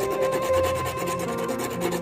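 A small hand file scraping rapidly back and forth on a thin silver wire held against a wooden bench pin, over soft background music.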